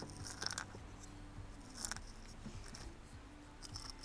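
Small beads in a small clay pot clicking against each other and the pot as fingers stir through them: a few faint, short clicks, about half a second in, near two seconds and again near the end.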